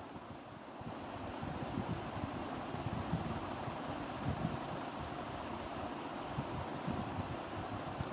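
Steady rushing background noise with a low rumble underneath. It keeps an even level and has no distinct events or tones.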